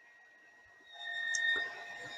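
A 0.75 kW cast-iron-impeller electric water pump runs faintly with a steady whine over a light hiss, swelling in about a second in. It has been switched back on by its pressure switch after a shower valve was opened and the pressure dropped.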